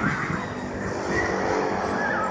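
Steady mechanical drone of the NoLimit thrill ride's drive machinery as it swings the arm and rider gondola.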